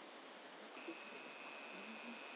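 Faint outdoor ambience: a steady hiss. Under a second in, a thin, steady high-pitched tone sets in and holds.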